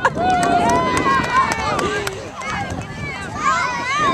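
Several overlapping voices of children and adults chattering and calling out at once, with no single clear speaker. A few sharp clicks come in the first second or so.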